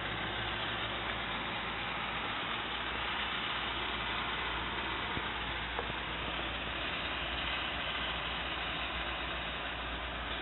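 Steady in-cabin noise of a 2002 Toyota Sequoia's 4.7-litre V8 idling: an even low hum under a steady hiss.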